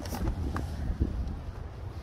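2021 GMC Canyon pickup's door being opened from inside: a couple of light clicks from the handle and latch around the middle, over a low steady rumble.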